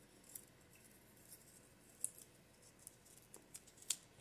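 Small folded slips of sticky-note paper being handled and unfolded by hand: faint, scattered crisp paper crackles and ticks, the sharpest one just before the end.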